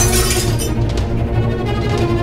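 A glass smashing on a hard floor, its crash dying away into scattering, tinkling shards within the first second. Film-score music with a low pulsing bass plays underneath.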